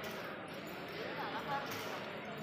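Faint shop ambience: a steady low background with distant voices talking briefly about a second in.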